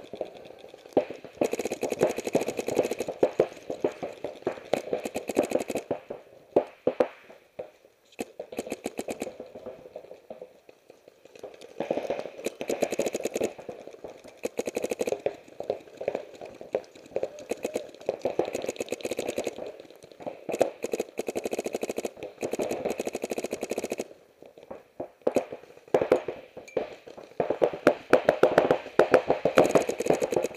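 Paintball markers firing rapid strings of shots, in several long bursts of fast popping broken by short pauses.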